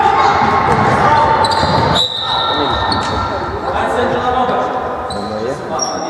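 Youth basketball game on a wooden gym floor: a bouncing ball and running feet, with players' shouting voices and short high squeaks, echoing in a large sports hall. The noise drops abruptly about two seconds in.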